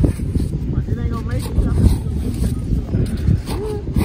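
Steady low wind rumble on the microphone, with people's voices in the background.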